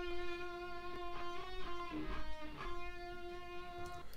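Solo guitar line playing long held, singing notes through Logic Pro's Tremolo effect, set to a slow two-bar rate that circulates the sound around the surround field. The note changes about a second in and again near the middle before settling back on a held note.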